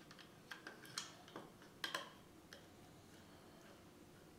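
Small screwdriver turning the terminal screws of a Sonoff Wi-Fi switch module, opening the terminals: a handful of faint, short clicks and ticks in the first two and a half seconds, then quiet.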